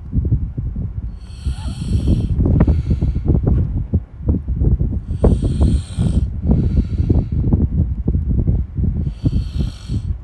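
Loud, uneven low rumble on the microphone, with three breath-like hisses about four seconds apart.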